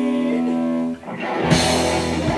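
Live rock band playing electric guitars and drums. Held notes die away about a second in, and after a short break the full band comes crashing back in with drums and distorted guitar.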